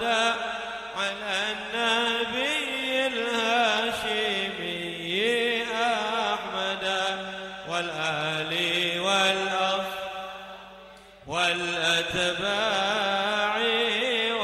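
A man chanting an Arabic munajat (supplication) into a microphone in a slow, melismatic melody with long held, wavering notes. His voice fades away about ten seconds in for a breath and comes back strongly about a second later.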